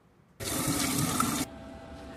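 Tap water running into a bathroom sink during face washing. It is loud for about a second and then cuts off suddenly, leaving a quieter steady hiss.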